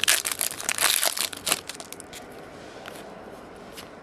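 Foil trading-card pack wrapper crinkling as it is pulled open by hand, loudest for the first second and a half, then only a few faint rustles.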